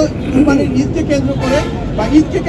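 A man speaking Bengali at press-briefing pace, with a steady low rumble of background noise underneath.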